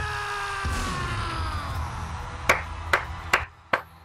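A long held note, slowly falling in pitch, fills the first half. A man then claps his hands four times at a slow, even pace, about two and a half claps a second.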